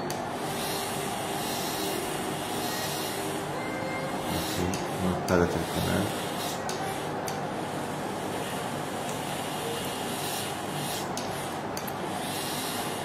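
Electric endodontic motor turning a rotary file in a root canal through a contra-angle handpiece, a steady running hum during canal cleaning and shaping.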